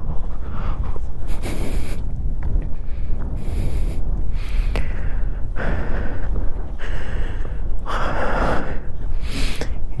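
Wind rumbling on the camera microphone, with a person breathing in and out audibly about every two seconds.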